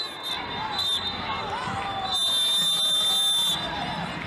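Referee's whistle on a football pitch: a couple of short blasts, then one long blast of about a second and a half starting about two seconds in, the full-time whistle ending the match. Players' shouts sound around it.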